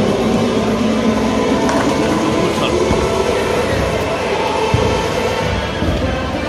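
Bowling ball rolling down the lane with a low, steady rumble, over the continuous clatter and chatter of a busy bowling alley, with one sharp knock near the end.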